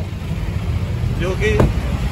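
A steady low rumble like a car engine idling, with a single sharp click about one and a half seconds in.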